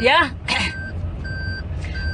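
An electronic beeper sounding a steady repeating beep, each beep about a third of a second long, about three beeps in two seconds. A voice calls out briefly at the start, over a steady low hum.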